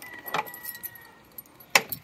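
Keys jangling as a key is worked into the newly fitted ignition barrel of a Kawasaki ZXR400, with a few small clicks and one sharp click near the end.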